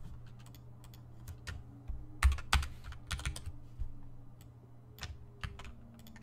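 Typing on a computer keyboard: irregular keystrokes in short runs, with the loudest cluster about two seconds in.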